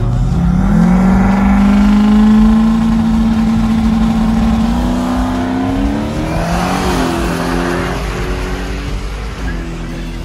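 Drag car's engine revving up and held at a steady high pitch for about five seconds, then climbing through the gears as the car launches down the drag strip, fading with distance near the end.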